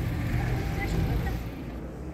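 Street noise: a low rumble of road traffic with faint voices over it, dropping away shortly before the end.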